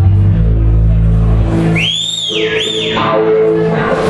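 Live band playing, a held low bass note and chord ringing out, with a shrill whistle near the middle gliding up, holding and falling, then rising and falling once more before the band's notes come back in.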